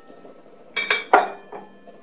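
Kitchen utensils and dishes clinking on the counter: two sharp clinks with a short ring a little under and just over a second in, then a lighter tap.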